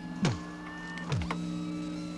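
Short motorised whirrs, two of them, each dropping quickly in pitch, over a steady electrical hum: robotic servo sound effects.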